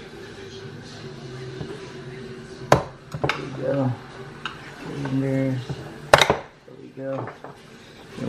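Two sharp plastic snaps, about three and a half seconds apart, as a small screwdriver pries the mirror glass's retaining clips off the adjustment servo of a Toyota Highlander side-view mirror.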